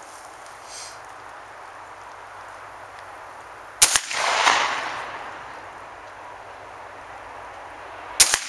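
A single shot from a Savage 745 recoil-operated 12-gauge shotgun firing a slug, a sharp crack about four seconds in, followed by an echo that dies away over about two seconds.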